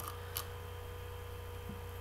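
Pause with no speech: a steady low electrical hum with a faint steady tone above it, and one brief click about a third of a second in.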